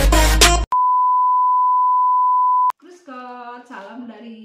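Intro music that cuts off abruptly just over half a second in, followed by a steady electronic beep tone lasting about two seconds that stops sharply; a woman's voice starts near the end.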